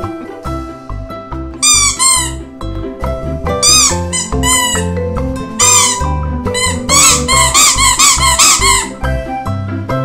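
Rubber squeeze toys squeaking, each squeak rising and falling in pitch: a pair about two seconds in, a few more later, then a quick run of about eight near the end. Children's background music plays underneath.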